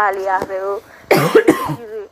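A person speaks a word, then coughs about a second in; the cough is the loudest sound here.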